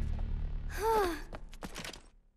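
A girl's short worried vocal sound about a second in, a brief 'hmm' whose pitch rises and then falls. A few soft clicks follow over a low steady hum.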